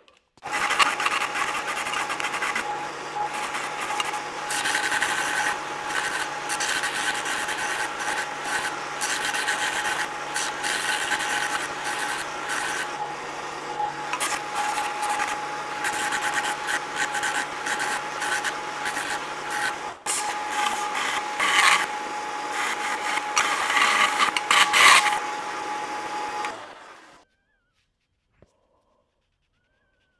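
Benchtop belt sander running with a steady whine while a small piece of quarter-inch steel flat bar is ground against the belt, a rasping grind that swells and eases as the piece is pressed and shifted. The grinding bevels the bar's ends to 30 degrees. Near the end the sander is switched off and quickly runs down to silence.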